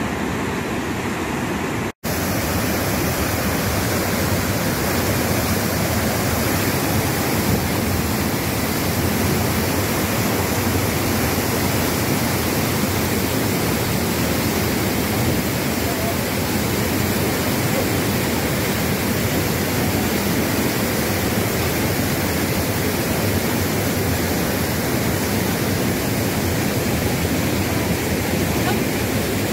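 Rhine Falls waterfall: a heavy mass of water pouring over the rocks, heard as a loud, steady rush of noise. About two seconds in the sound cuts out for an instant and returns louder and hissier, nearer the falls.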